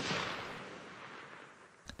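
Echoing tail of a single rifle shot fading away steadily over about two seconds.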